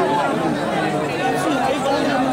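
A crowd of men talking and calling out over one another, several voices at once with no single speaker standing out.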